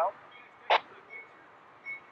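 Voice over a railroad two-way radio: a word ends at the start, a short clipped burst comes about three quarters of a second in, then faint steady hiss.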